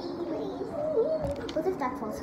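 Young girls' voices in wordless, sing-song vocalizing with a wavering, sliding pitch, with a few low bumps of phone handling about a second in.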